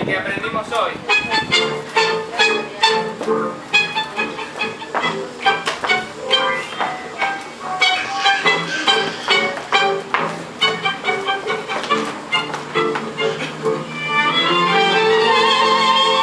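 Recorded tango music with violins: a clipped, beat-driven passage of short accented strokes, then about 14 s in a louder, sustained violin melody with vibrato takes over.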